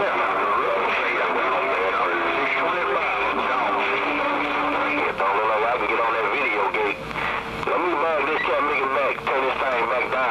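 CB base-station radio receiving distant skip stations: voices come through a haze of static, bending and wavering in pitch. A steady low whistle from overlapping carriers runs under them through the first half.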